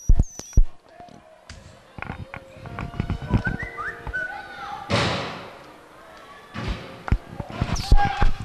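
Pitch-side sound of a youth football match: a football being kicked, heard as a series of sharp thumps. Children's short calls come from the pitch between them.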